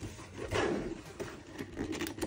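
Cardboard box with a plastic window being turned over in the hands, rubbing and scraping against the fingers, loudest about half a second in.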